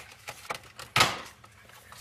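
Plastic dash trim panel of a Jeep Wrangler being pried off, with a few faint clicks and then one sharp snap about a second in as its pressure clips let go.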